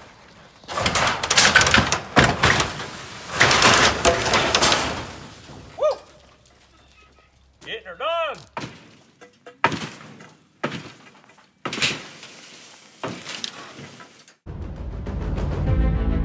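Tearing down a storm-collapsed carport of wooden framing and sheet-metal roofing: two loud, long bouts of crashing and rattling metal and wood in the first five seconds, then a run of separate knocks and thuds as lumber is handled and dropped. Background music comes in near the end.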